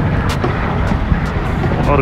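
Outdoor ambience: a steady rumbling noise of traffic and wind on the microphone.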